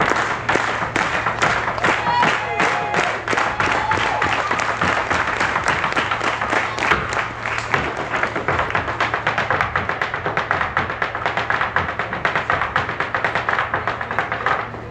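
Irish dance hard shoes battering on a stage: a fast, unbroken run of sharp taps and heel clicks.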